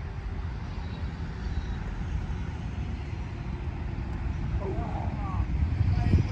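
Wind buffeting the microphone as a low, uneven rumble, with a faint voice about five seconds in.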